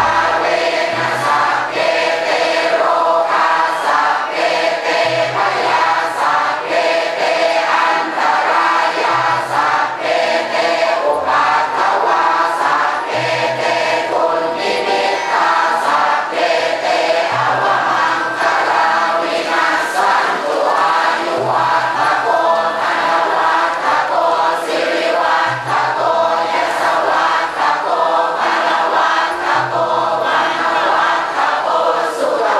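A large group of voices singing together to an instrumental accompaniment, a slow song with a low bass line that changes every few seconds.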